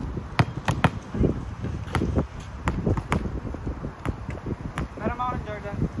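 A volleyball being hit and bounced, a series of sharp slaps at irregular intervals, some close together. A brief voice follows near the end.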